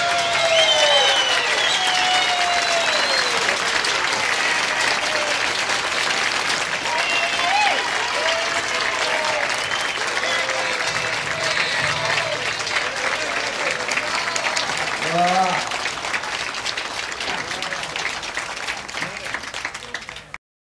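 Applause from a group of people, with voices calling out over the clapping; it fades out over the last few seconds.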